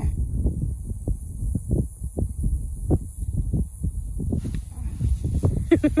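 Wind buffeting the microphone, a steady low rumble with irregular soft rustles, and a short laugh right at the end.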